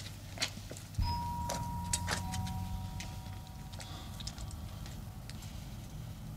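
Gate intercom with its line opened about a second in: a steady electrical hum and a high steady tone, joined by a second, lower tone. The tones stop after about three seconds while the hum goes on, with scattered light clicks.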